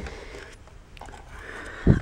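Handling noise from a hand-held camera being moved: faint rustling, then a single low thump near the end.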